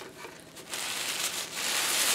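Paper packaging rustling as a new wig is unwrapped and handled. It starts under a second in and grows louder toward the end.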